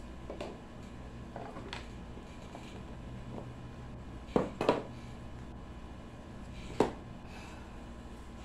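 Quiet room with a steady low hum, and a few light taps and clicks from a deck of cards being handled. Two sharper clicks come close together about four and a half seconds in, and another near seven seconds.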